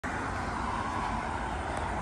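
Steady road traffic noise with a low rumble, from vehicles going by.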